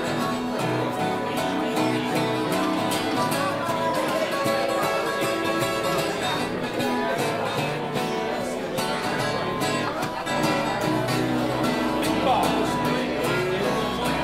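Live band music: a guitar played at the front of the mix through a blues number, steady and continuous.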